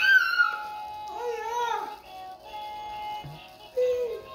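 A toddler's high-pitched wavering squeal, then a second, lower wavering vocal sound about a second later, over faint steady background music.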